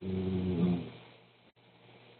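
A low, pitched vocal sound, like a person's drawn-out 'mmm', lasting under a second and fading away, heard through an online call's narrow audio.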